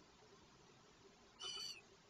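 A single short, high-pitched call from an eagle owl chick about one and a half seconds in, over near silence.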